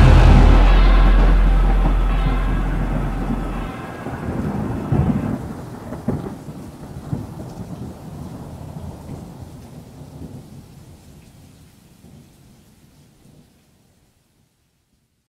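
Thunder rumbling with rain, loud at first and slowly dying away, with a fresh crackle of thunder about five seconds in. It fades out just before the end.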